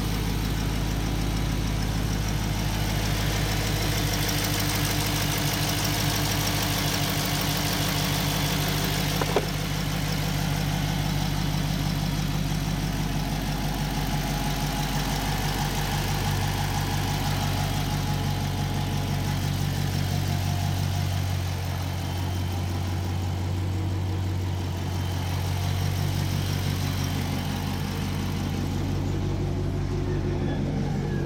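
A 2021 Dodge Charger's 5.7-litre Hemi V8, fitted with an aFe Silver Bullet throttle body spacer and an open cone air filter, idling steadily with the hood open. There is a single sharp click about nine seconds in.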